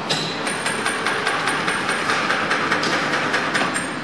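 Bakery machinery running with a fast, steady clatter of many small knocks over a continuous mechanical noise.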